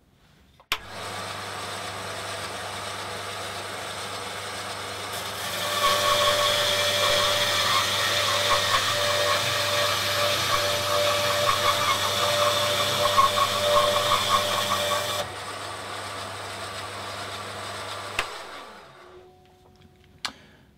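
Burgess BBS-20 Mk II bandsaw switched on with a click about a second in and running steadily. It grows louder for about ten seconds as its coarse 3/8-inch, 6 tpi blade cuts through a pine block a couple of inches thick, then runs free again and winds down with a falling hum near the end.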